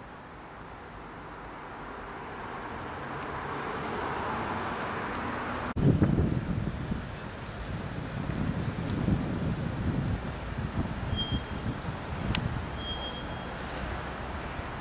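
Outdoor street noise swelling steadily over the first few seconds, like a car approaching. Then an abrupt cut, after which wind buffets the camera microphone in uneven gusts.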